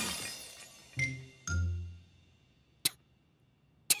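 The tail end of a tower of china teacups crashing down, a clattering, clinking smash that dies away over the first second. A single short click follows near the end.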